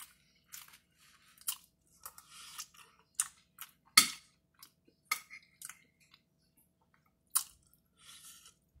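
Chewing and mouth sounds of a person eating a meal, heard as a string of short clicks. About halfway through comes one sharp, loud clink of a spoon against the plate.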